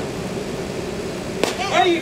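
Spectators at a baseball game murmuring, then a single sharp crack of the pitched ball's impact about one and a half seconds in, followed at once by several people calling out.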